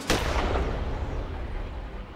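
A single rifle shot from a carbine, loud and sharp, with a long echoing decay that fades over about two seconds.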